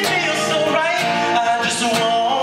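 A man singing a long held note with a slight waver while strumming an acoustic guitar.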